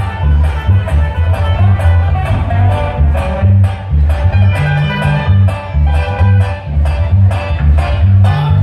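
A live band playing amplified music: electric guitars over a deep bass line, with drums keeping a steady beat.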